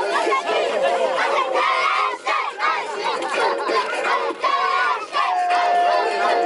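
A huddle of young football players shouting and chanting together, many voices overlapping. Near the end, one long steady note is held for over a second.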